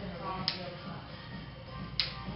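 Background music with faint voices, and two sharp clicks, one about half a second in and one at the end, from the snap clips of clip-in hair extensions being pressed shut.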